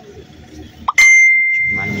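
A single loud, bright bell-like ding about halfway through, one clear ringing tone that fades over about a second, just after a brief rising chirp.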